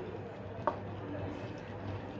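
Faint sounds of a wooden spoon moving chunks of potato and meat through a thin curry in a pan, with one light tick about two-thirds of a second in, over a low steady hum.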